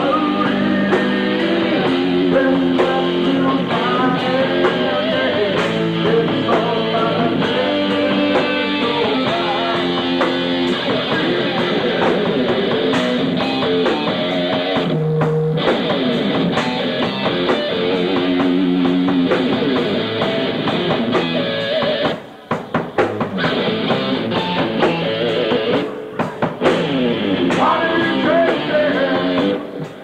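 Live rock band playing: electric guitar over a drum kit. The band stops short for a moment a few times in the last third.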